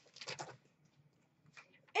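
Hockey trading cards handled and flicked through by hand: a few brief rustles and slides near the start and one faint one later, otherwise near silence.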